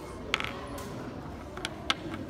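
Three short, sharp clicks over low room murmur: one about a third of a second in and two close together near the end, the last the loudest.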